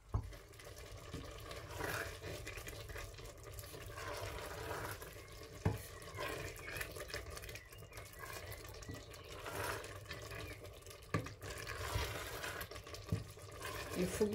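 A wooden spoon stirring cooked, watery African breadfruit (ukwa) seeds in a stainless-steel pressure pot, making a wet stirring sound. There are a few sharp knocks, one about a third of the way in and two near the end.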